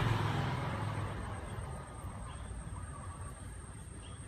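Low rumble of a passing vehicle, loudest at first and fading over about two seconds. A steady thin high whine and a few faint short chirps run alongside it.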